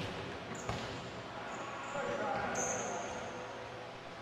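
A volleyball being hit, one sharp smack a little under a second in, echoing in a gymnasium, with players' voices calling out and short high squeaks.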